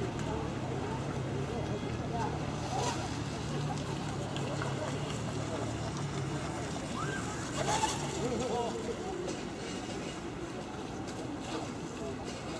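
Indistinct voices talking in the background over a steady low hum, with a brief louder sound about eight seconds in.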